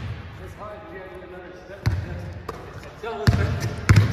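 Basketball bouncing on a hardwood gym floor: one sharp bounce about two seconds in, then quick dribbling near the end as a player drives.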